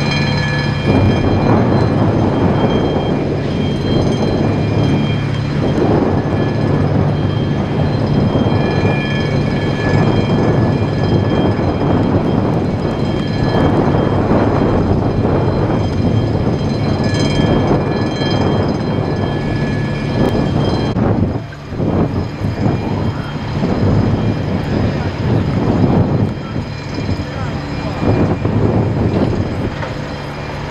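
A loud, steady engine drone: a low hum with several high, steady whining tones over a rough rumble. It dips briefly about two-thirds of the way through.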